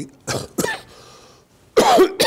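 A man coughing: a couple of harsh coughs in the first half-second, then another burst of coughing just before the end.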